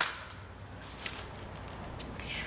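A hand staple gun fires once with a sharp snap, followed by a fainter click about a second later.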